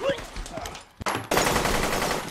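Automatic rifle fire: a few scattered shots, then from about a second in a dense, sustained burst of rapid fire.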